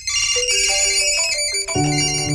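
A short electronic jingle: bright, bell-like synthesized notes play a quick stepping melody, then a lower chord comes in and is held near the end.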